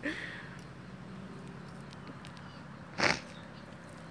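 A person chugging a can of carbonated grapefruit water, mostly quiet, then one short breathy sound about three seconds in as the drinking ends.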